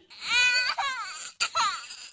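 A baby crying: one long, high-pitched wail, then a second, shorter cry starting about three-quarters of the way through.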